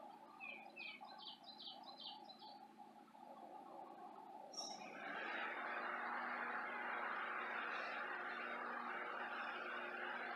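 A bird calling a quick series of short chirps in the first couple of seconds. From about five seconds in, a steady rushing noise sets in and holds, with a faint low hum beneath.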